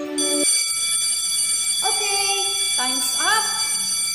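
Countdown timer alarm ringing as the timer reaches zero: a steady, high-pitched electronic tone that starts a moment in, just as soft background music ends, and rings on to near the end. A voice is heard over it in the second half.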